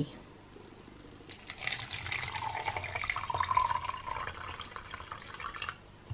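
Tea being poured from a mug into a plastic cup of ice cubes and tapioca pearls. The splashing pour starts about a second in and lasts about four seconds, then stops.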